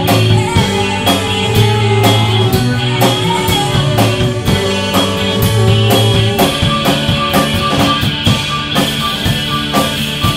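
Live rock band playing: a drum kit, electric guitars and keyboards over a sustained bass line. The low part changes about six seconds in.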